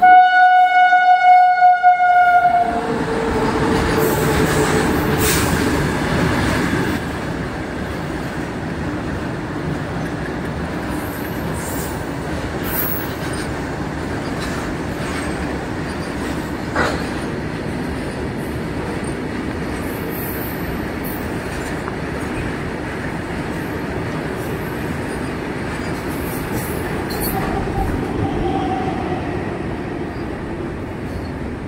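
Indian Railways electric freight locomotive sounding its horn loudly for about two and a half seconds, a lower note trailing off over the next few seconds, then a goods train of tank wagons rolling past with a steady rumble and rattle of wheels on rail. A single sharp clank comes about seventeen seconds in.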